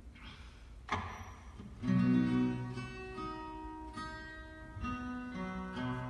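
Acoustic guitar being picked: a sharp knock about a second in, then a few ringing bass and treble notes from about two seconds in, loudest as they start.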